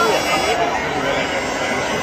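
Stadium crowd chatter: many voices talking over one another at a steady level.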